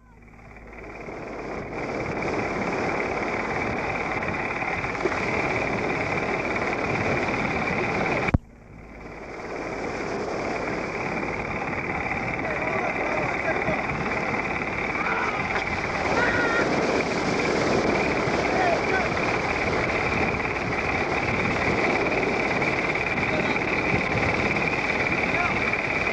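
Steady rush of breaking surf and wind on a home-movie camera microphone, with faint distant voices. About eight seconds in the recording cuts out with a click and fades back up over a couple of seconds.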